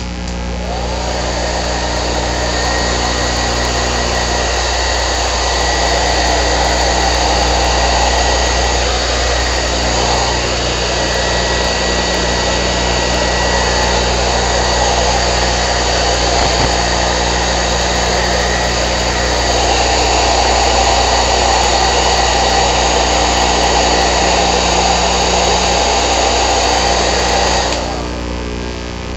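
Handheld electric hair dryer blowing steadily on a section of hair wound around a round brush, spinning up over the first couple of seconds and switched off at the very end.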